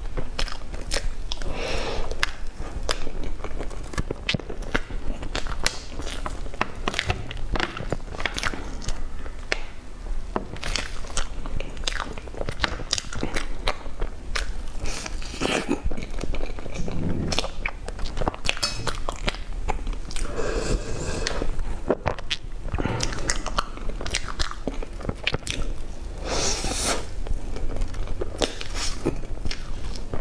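Close-miked mouth sounds of eating a soft, creamy layered crepe cake: wet chewing and lip smacks with many small clicks, and a few louder bursts along the way.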